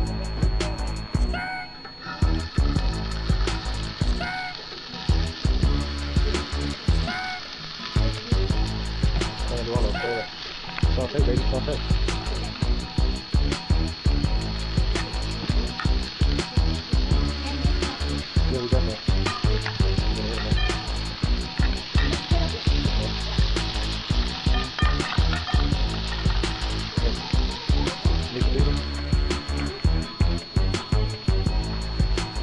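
Diced onion and green pepper sizzling as they fry in a pan, under background music with a steady beat and heavy bass.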